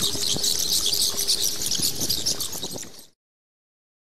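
Television static: a dense hiss with crackles and a faint steady tone, fading and then cutting off to silence about three seconds in.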